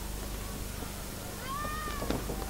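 Steady hum and hiss from the recording of the boxing hall. About one and a half seconds in, one high-pitched shout from a spectator sets in and falls slightly in pitch.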